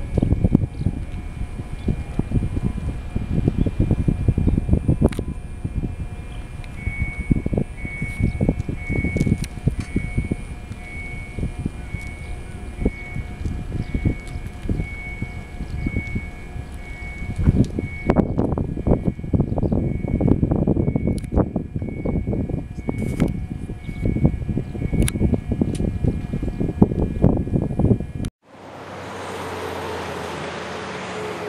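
Wind buffeting an outdoor microphone in gusts, with a faint electronic beep repeating about twice a second through the middle stretch. Near the end the sound cuts off abruptly to a steady, quieter hum.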